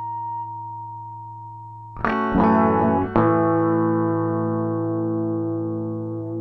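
Electric guitar played through effects pedals. A sustained tone gives way to a chord struck about two seconds in and restruck twice within the next second, then left to ring and slowly fade with a slight pulsing wobble.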